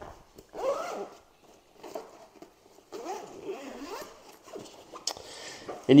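Fabric backpack's zipper being pulled open in several separate pulls, the pitch of each rising and falling with the speed of the slider.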